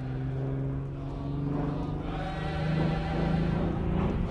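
Single-engine propeller plane flying overhead: a steady engine drone that grows louder, its pitch rising about halfway through.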